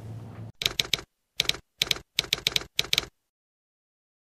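A typewriter keystroke sound effect: about a dozen sharp clacks in small irregular clusters over two and a half seconds, with dead silence between them.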